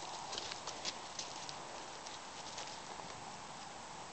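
Faint footsteps crunching over dry leaf litter and twigs, with a few light crackles in the first second and a half, then quieter.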